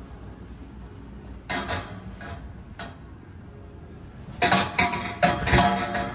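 Knocks and clatter from a child clambering about a play-structure loft: a few knocks, then a louder run of clattering knocks about four and a half seconds in. Faint background music plays throughout.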